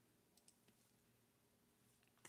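Near silence, with a couple of faint clicks about half a second in.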